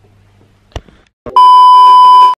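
Two short clicks, then a very loud, steady, high test-tone beep lasting about a second: the TV colour-bars test-pattern sound effect used as a glitch transition between scenes.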